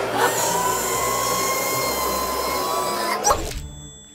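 Cartoon soundtrack: a loud, steady, noisy whirring effect with a held tone over music, accompanying an arm-wrestling struggle. It cuts off with a sharp hit a little over three seconds in, then fades.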